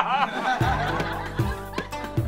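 A man laughing heartily for the first half second, cut off by sitcom theme music with a steady beat that comes in about half a second in.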